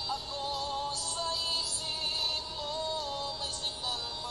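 Music: a Tagalog love song, its melody in long held notes that step from one pitch to the next.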